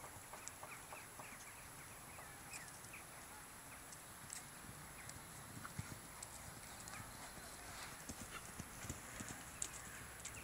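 Faint hoofbeats of a horse cantering on a sand arena surface: soft, irregular thuds with a few sharper knocks.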